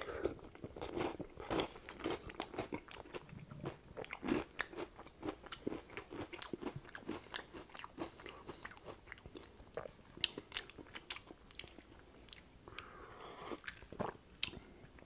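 Close-miked chewing of a mouthful of chili with croutons, with irregular small crunches and wet mouth clicks.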